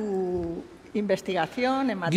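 Speech only: a person's voice between words, with a drawn-out held sound at the start and then a few short syllables.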